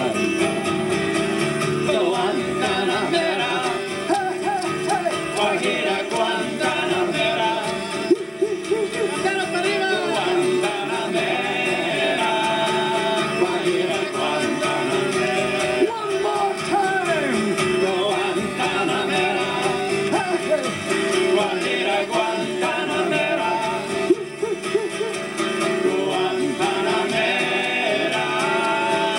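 Live folk music: male voices singing, with acoustic guitar accompaniment, the vocal line sliding up and down in pitch.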